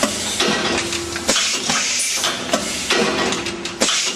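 AP-805 automatic wood venetian blind machine running, with a steady hiss and a quick series of mechanical clicks and knocks, about two a second, as its mechanism handles the wooden slats on the ladder tape.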